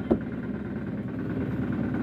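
Fishing boat's engine idling with a steady low hum, with one short knock just after the start.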